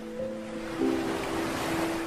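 Slow, calm background music of long held notes, changing note twice, layered over a recorded sound of ocean waves that swells to a peak near the end.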